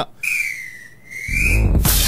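Broadcast transition sound effect: a whistle-like tone with a hiss above it that dips in pitch and rises again over about a second and a half, then a drum-led music sting comes in near the end.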